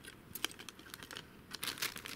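Tissue paper crinkling with light clicks as a small ornament is handled and turned over in the hand; quiet and intermittent, busier near the end.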